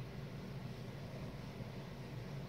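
Quiet, steady room noise with a low hum, and faint rubbing of a paper towel wiping toothpaste polish off a plastic turn-signal lens.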